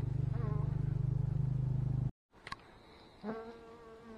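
A steady low hum that stops abruptly about two seconds in. About three seconds in, honey bees from the opened winter hive start buzzing, a steady even-pitched hum that carries on.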